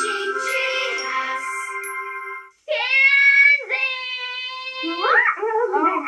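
A children's TV channel ident jingle with bright layered tones ends about two and a half seconds in. After a brief break come two long held sung notes, and then a woman starts talking.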